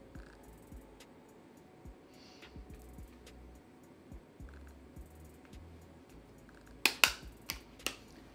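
A bronzer makeup brush swirled over the face, faint, with light scattered ticks. About seven seconds in come several sharp clicks, the loudest sounds.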